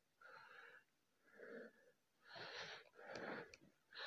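Faint, heavy breathing close to the microphone: about four short, wheezy breaths in and out.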